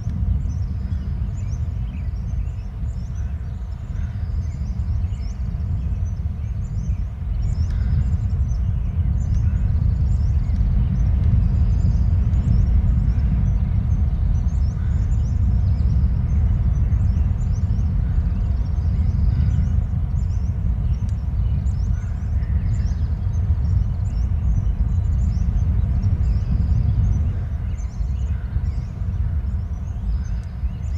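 A steady low rumble, a little louder through the middle, with faint short high chirps repeating above it.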